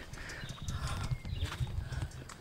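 Footsteps and camera-handling bumps as someone walks quickly while carrying the camera: a run of dull, irregular low thumps with a few light clicks.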